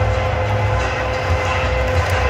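Steady din of a large stadium crowd, with a single tone held steady underneath.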